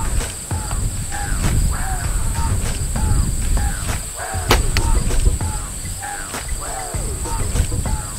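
A compound bow shot at a 20-yard target about halfway through: a sharp snap of the string on release, then a second sharp knock a fraction of a second later as the arrow strikes the target. Wind buffets the microphone and insects chirr steadily in the background.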